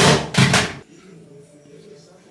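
Two brief knocks and rustles of handling close to the microphone, about half a second apart. After them there is only a faint low room hum.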